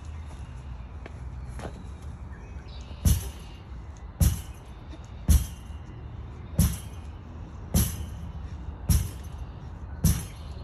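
Rubber lacrosse ball hits during a wall-ball drill: a faint hit, then six sharp smacks, one about every second, each with a brief ringing tail.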